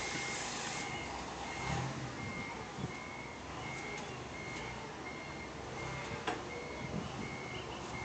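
Forklift's warning beeper sounding a steady single-pitched beep, about three beeps every two seconds, over a low machine rumble. A sharp click is heard about six seconds in.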